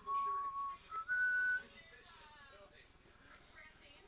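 Three clear, steady whistle-like notes, each higher than the last: a half-second note, a short blip, then a half-second higher note, all within the first second and a half.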